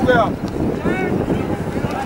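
Wind buffeting the microphone, with two short distant shouts from players on the pitch, one right at the start and one about a second in.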